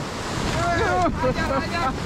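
Whitewater rapids rushing loudly around an inflatable raft, with wind buffeting the microphone. Rafters' voices call out wordlessly over the water.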